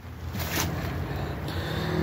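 Wind buffeting the phone's microphone, with handling rustle as the camera is swung down, over a low steady hum.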